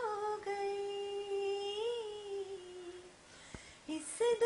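A woman's unaccompanied voice holding one long sung note that swells once, then slowly falls in pitch and fades out about three seconds in. A faint click follows, and a new note begins right at the end.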